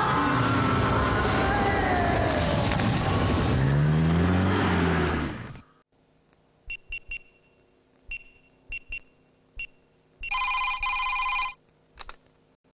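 A loud noisy stretch with gliding tones cuts off suddenly about five and a half seconds in. A few faint short high beeps follow, then near the end a telephone rings once for about a second, an electronic ring in several steady pitches.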